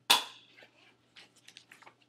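One loud, sharp knock with a short high-pitched ring that dies away within half a second, followed later by a few faint ticks.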